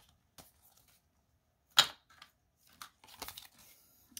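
Paper bills and binder pages being handled: faint paper rustles and small clicks, one sharp snap a little under two seconds in, and a short burst of page rustling near the end.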